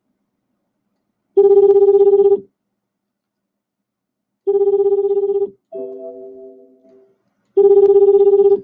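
Telephone ringing on an outgoing call: three rings, each about a second long with a fluttering tone, about three seconds apart. A softer, fading chord of tones sounds between the second and third rings.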